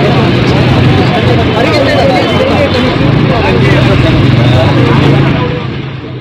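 Many voices talking and calling over one another in an unintelligible babble, with a steady low engine hum beneath, in a rough phone-quality recording. It fades somewhat near the end.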